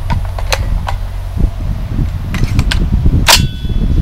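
A few light sharp clicks, then one loud sharp crack about three seconds in, followed by a brief metallic ringing tone.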